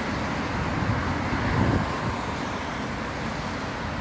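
Steady low rumble of road traffic on a town street, swelling slightly as a vehicle passes about a second and a half in.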